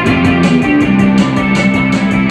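Live post-punk band playing an instrumental passage: electric guitar and bass holding sustained notes over drums that keep a steady beat of about four strikes a second.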